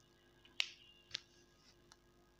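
Three short, faint clicks, well spaced, the first the loudest.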